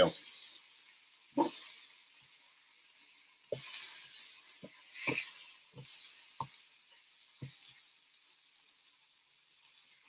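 Thin strips of smoked brisket sizzling faintly on an electric griddle, with about seven light knocks and clinks of a metal spatula against the griddle plate as the strips are moved.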